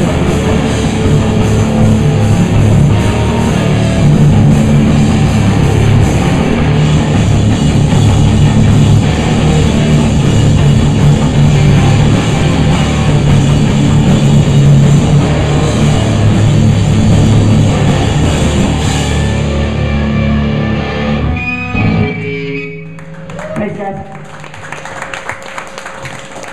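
Live rock band playing loud: electric guitar, bass guitar and drum kit through amplifiers. The song stops abruptly about 22 seconds in, leaving a quieter lull with scattered voices and a few guitar notes.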